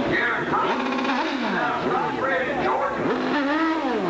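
Drag motorcycle's engine revving up and down in quick repeated blips during a tyre-smoking burnout.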